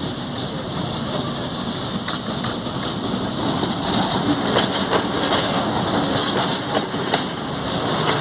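Diesel locomotive and passenger coaches rolling slowly into a station platform, the engine running and the wheels clicking over the rail joints. It gets louder about halfway through as the locomotive draws level and the coaches pass close by.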